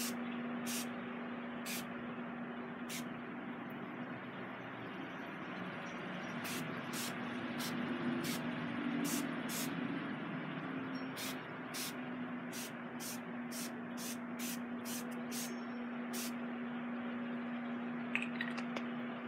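Wig shine spray being spritzed onto a curly synthetic wig: a long series of short hissing bursts, some in quick runs of about two a second, pausing for a few seconds after the first few, over a steady low hum.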